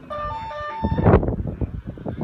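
A short electronic two-tone signal: four quick notes alternating between a higher and a lower pitch, stopping abruptly less than a second in. It is followed by gusty wind buffeting the microphone.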